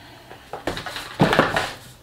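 A cardboard beauty subscription box being picked up and handled on a desk: a few knocks and rustles, loudest a little past a second in.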